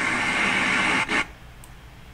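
A person's breath rushing hard and close on the microphone: one long exhale lasting about a second and a half, followed at once by a short second puff.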